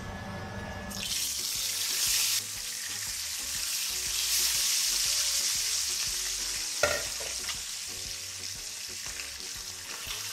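Two whole lionfish dropped into hot oil in a frying pan: a loud sizzle bursts up about a second in, eases briefly, then swells again into steady frying hiss. A single sharp tap sounds about seven seconds in.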